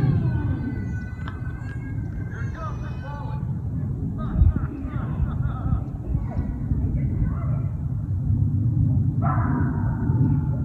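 A steady low rumble with people's voices calling out over it, loudest in the first few seconds, and a single thump about four and a half seconds in.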